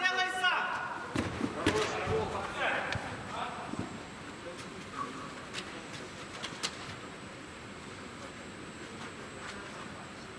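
Players' shouts and a few thuds of a football being kicked on artificial turf inside an inflatable sports dome. A call trails off at the start, then sharp knocks and brief shouts come over the next few seconds, after which it grows quieter with only a few isolated knocks.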